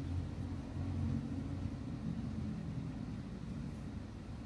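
Steady low background rumble, with faint hiss above it.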